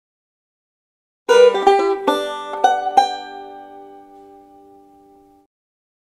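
A short banjo phrase starting about a second in: a quick run of about five plucked notes, the last chord left to ring and fade before it cuts off.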